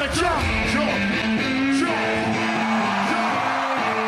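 Live band music as a song closes: the heavy bass beat drops out about half a second in, leaving electric guitar holding sustained notes that step between a few pitches over steady crowd noise.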